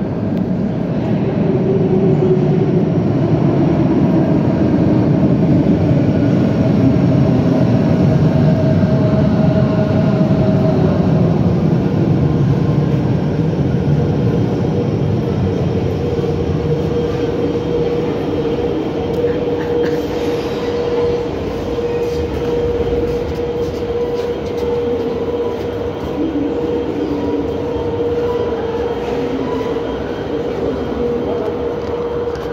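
An 81-553.3 metro train pulling into a station: a loud rumble with whining tones that fall in pitch as it brakes, settling about halfway through into a steady hum from the standing train, with a few short clicks later on.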